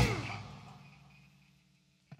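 A rock band's last chord on electric guitar, bass and drums ringing out at the end of the song, fading away over about a second and a half and leaving only a faint low hum.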